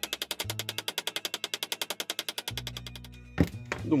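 Rapid light hammer taps on steel, about a dozen a second: the cut-off end of a threaded stud on a knife handle being peened over so that the nut on the tang cannot unscrew. The tapping stops about three seconds in, and one louder knock follows just before the end.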